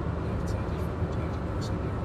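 Steady road and engine rumble of a moving car, heard from inside the cabin, with a few faint hissy ticks now and then.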